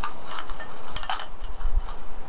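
Small metal jewelry, bracelets and necklace chains, clinking and rattling in a handful of light clicks as it is lifted out and untangled.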